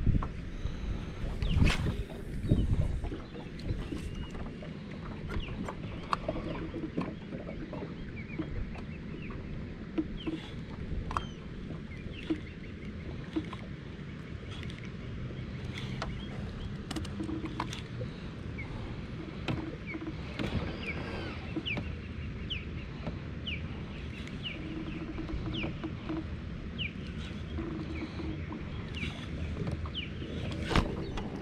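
Steady wind rumble on the microphone and water lapping around a kayak, with scattered light clicks and knocks of rod and spinning-reel handling. The loudest handling noise, a knock and rustle, comes in the first few seconds, and short faint chirps come and go in the second half.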